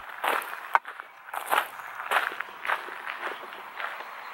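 Footsteps crunching on loose gravel at a steady walking pace, about two steps a second.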